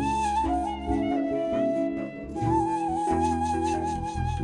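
Kurdish folk music from a small acoustic ensemble in an instrumental passage: a single lead melody of long, ornamented held notes over a low accompaniment, easing off briefly about halfway through.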